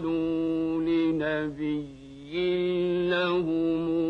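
A solo male voice chanting in long, held notes, with a short dip between phrases about two seconds in before the next sustained phrase.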